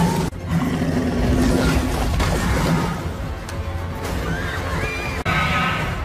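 Dramatic film score over a dense mix of action sound effects, with two abrupt breaks in the sound, one shortly after the start and one about five seconds in.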